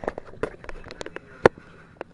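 Handling noise from a handheld camera carried at a walk: a quick string of knocks and clicks, the loudest thump about one and a half seconds in.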